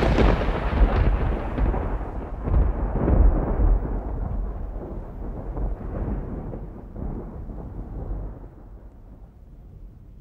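Rolling thunder, loud at first, swelling a few times with deep low rumbling, then slowly dying away toward the end.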